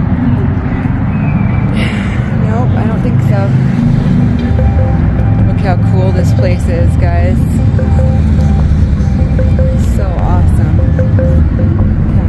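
An ice cream truck's jingle plays a repeating tune, growing clearer about halfway through, over a steady low rumble of traffic or engine noise.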